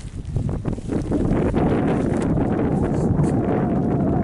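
Wind buffeting a camera microphone: a loud, steady, low-pitched noise with no let-up.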